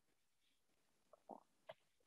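Near silence in a pause of speech, with two faint, brief sounds a little past halfway.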